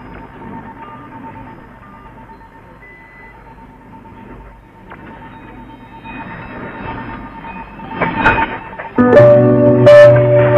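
Music from a shortwave broadcast played through a Sony ICF-SW7600GR portable receiver: quiet and hissy at first, with a faint steady whistle. Near the end it swells into loud instrumental music with piano-like chords.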